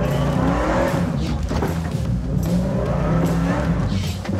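Toyota Tundra pickup's engine revving hard under load as it climbs a steep rock face, its wheels scrabbling on rock and gravel, with background music.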